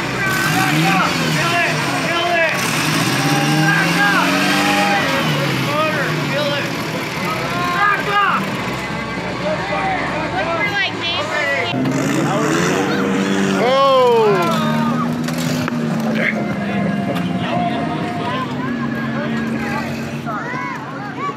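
Onlookers shouting and whooping over a rock-crawling buggy's engine revving on the rocks, with a burst of loud shouts about two-thirds of the way through.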